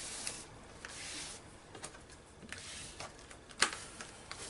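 Paper being rubbed and pressed flat by hand as a glued flap is smoothed down, a soft rubbing hiss, with a few light taps and one sharper tap shortly before the end.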